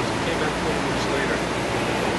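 Steady, loud rushing noise of an outdoor street recording, with faint voices in the background.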